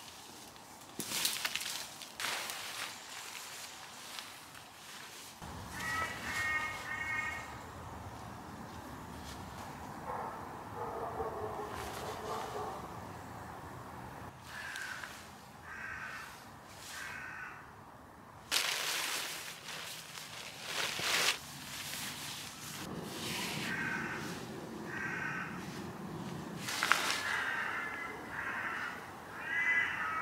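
Crows cawing several times in short runs of two or three caws. Loud rustling of camping gear being handled comes in between, loudest about a second in and again past halfway.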